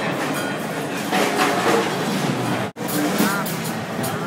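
Loud, dense din of many drum kits and cymbals being played at once in a crowded drum exhibition hall, with voices mixed in. The sound breaks off for an instant about two-thirds of the way through.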